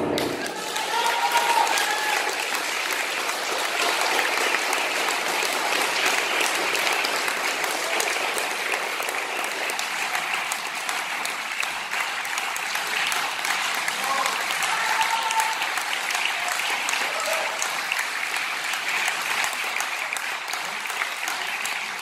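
Audience applauding steadily, dense clapping with a few voices among it.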